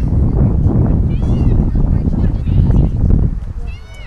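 Wind rumbling on the microphone, easing off about three seconds in, with high-pitched shouts from players or spectators about a second in and again near the end.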